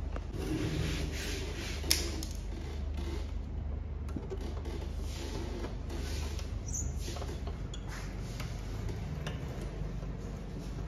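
A thin line being sawed back and forth behind a car's chrome emblem, cutting through the badge's adhesive tape to remove it: light scratchy rubbing, with one sharp click about two seconds in, over a steady low hum.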